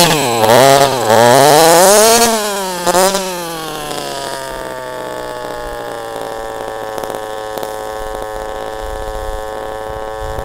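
Small 26cc two-stroke petrol engine of an HPI Baja SS RC buggy revving up and down for about three seconds, then dropping to a steady idle that sinks slowly in pitch as the car stops. The clutch has broken, so the engine runs on without driving the car.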